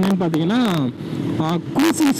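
A man talking over the steady running noise of a Bajaj Pulsar 150 motorcycle being ridden on a road.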